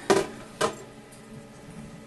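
Two short knocks of handling about half a second apart near the start, then quiet room tone with a faint steady hum.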